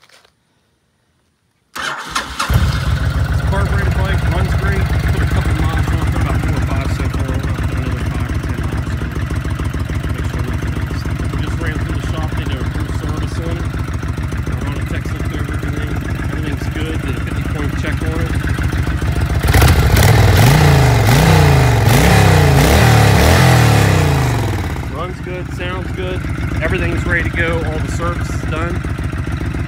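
Honda VTX 1300's V-twin engine started about two seconds in, catching at once and then idling steadily. About twenty seconds in it is revved a few times, pitch rising and falling, before dropping back to idle.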